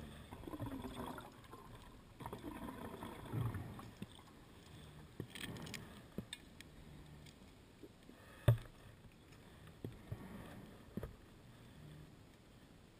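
Water sounds in uneven swells that come and go, with one sharp click about eight and a half seconds in.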